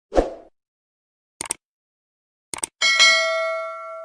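Subscribe-button animation sound effects: a short pop, a double mouse click, then two more quick clicks, followed by a bright notification-bell ding that rings on and fades over about a second and a half.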